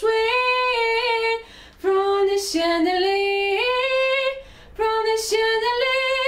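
A solo female voice singing a cappella, without accompaniment, in long held melodic phrases with two short breaks between lines.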